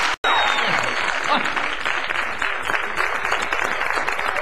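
Studio audience applauding, a dense steady clapping that follows a brief dropout of the sound about a fifth of a second in.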